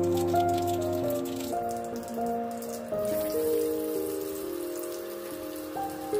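Background music with a melody over hot oil in a steel pan. Mustard seeds crackle and pop in the first part, then a steadier sizzle sets in about halfway through as chopped shallots fry.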